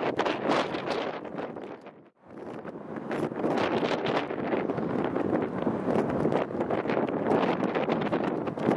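Wind rushing and buffeting on the microphone, a loud, even noise. It drops briefly to near silence about two seconds in, then carries on.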